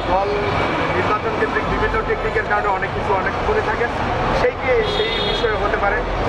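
A man talking, with steady street traffic noise behind him.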